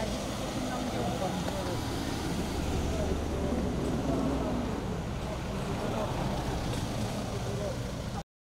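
SUVs in a slow-moving convoy with their engines running in a steady low hum, with indistinct voices of people around them.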